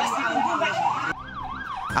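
Fire truck siren on a fast up-and-down wail, sweeping in pitch about two to three times a second. Just over a second in, the sweep turns cleaner and a little quieter.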